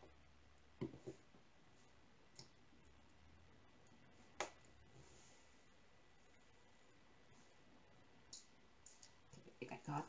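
Faint, scattered clicks of a diamond painting drill pen pressing drills onto the sticky canvas, the small crunch of each drill seating. There are about half a dozen in all, the loudest about four seconds in, with a few more close together near the end.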